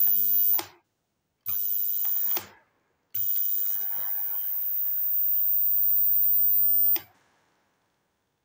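A homemade ozone-generator air purifier, a blower fan and ozone plate, switched on and off by hand three times: a hiss with a low electrical hum and a very high whine, each run starting and cutting off abruptly. The first two runs are short and the last lasts about four seconds.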